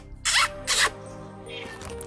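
A person takes two quick sniffs of a scented exfoliating gel on her fingers, over quiet background music.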